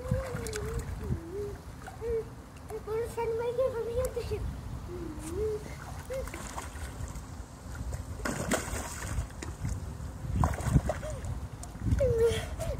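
A person humming a wandering tune for the first five seconds or so, then two short splashes of swimming-pool water in the second half as a swimmer moves through the water.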